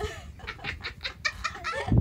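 Laughter in a rapid run of short staccato bursts, several a second.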